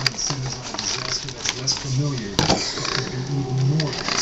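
Clear plastic blister packaging crackling, with a few sharp clicks as it is handled and pulled apart. A low voice runs under it without clear words.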